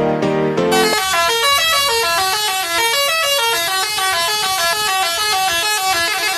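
Bus 'telolet' multi-tone air horn playing its melody: a fast run of short horn notes stepping up and down in pitch, several a second, starting about a second in.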